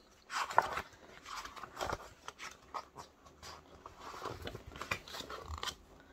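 Rustling and scraping of a large hardback picture book being handled and moved about, with a sharper rustle and click about half a second in and fainter scuffs after.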